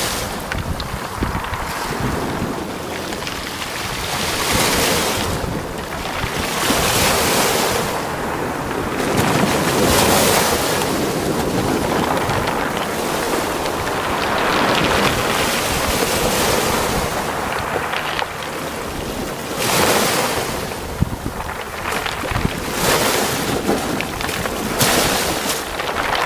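Choppy sea and wind: a steady rush of water that swells every few seconds, with wind buffeting the microphone.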